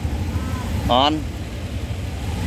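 A motorbike engine idling with a low steady rumble, and a short spoken phrase about a second in.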